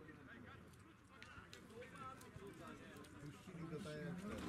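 Faint distant voices of footballers calling out across the pitch, with a few faint knocks.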